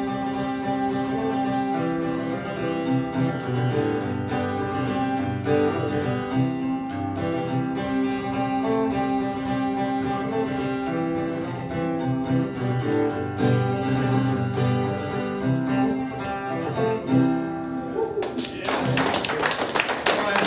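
Acoustic guitar strummed with a harmonica played in a neck rack, long held notes over the chords, closing out a song. The music stops about eighteen seconds in and applause begins.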